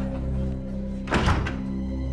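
Tense soundtrack music with steady low sustained tones; a little over a second in, one loud wooden thud as a heavy barn door is shut.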